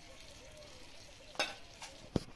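Jackfruit and potato curry sizzling in a wok over a wood fire while a metal spatula stirs it. A sharp scrape of the spatula against the pan comes about a second and a half in, with a lighter one just before the end.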